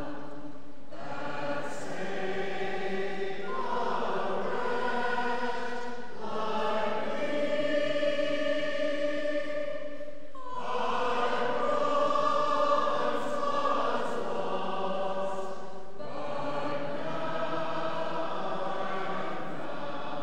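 Church choir singing a slow hymn in long held notes, phrase by phrase, in a reverberant church.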